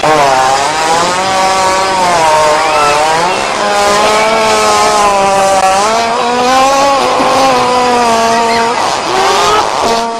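A hippopotamus breaking wind: one long, loud, buzzing fart that wavers slowly up and down in pitch for about ten seconds and cuts off suddenly.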